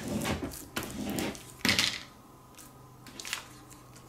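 Plastic squeegee rubbed hard over transfer tape on a vinyl decal sheet, several scraping strokes in the first two seconds, the last one the loudest. Then it goes much quieter, with a few light taps.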